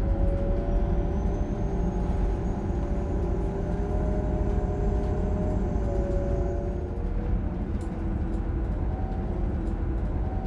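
Inside a moving city bus: steady low engine and road rumble with a faint wavering whine and light rattles.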